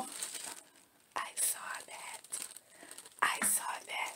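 Tissue paper rustling and crinkling in a few irregular bursts as it is pulled open by hand.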